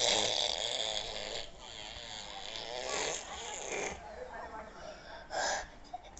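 Breath blown through a soap-bubble wand, a hissing blow lasting about a second and a half. Faint breathy child's vocal sounds follow, and a second short blow comes near the end.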